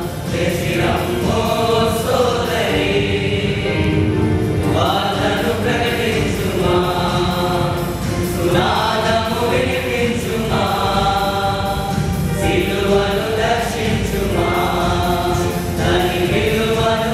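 Men's choir singing a Christian devotional song in Telugu, in long held phrases, one lead voice on a microphone.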